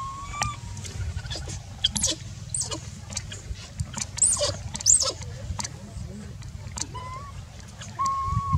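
Rustling and crackling of grass and dry leaves as a baby macaque rummages head-down between rocks, with a few short high chirps and calls over a steady low rumble.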